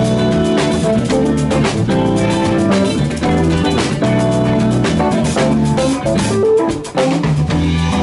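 Live blues band playing an instrumental passage: electric guitars, bass guitar, drum kit and keyboard, with no singing.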